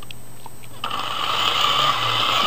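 The hand-cranked dynamo of an Evershed & Vignoles "Wee" 500-volt Megger insulation tester starting up about a second in as its handle is turned, then whirring steadily while it generates the test voltage.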